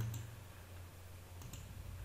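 A few faint computer mouse clicks, one just after the start and two close together about one and a half seconds in, over a steady low electrical hum.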